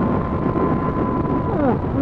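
Motorcycle riding at road speed: steady wind rush on the microphone over the engine running, with a faint steady whine throughout.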